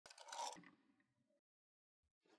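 A brief scrape, loudest about half a second in and fading out by about a second and a half.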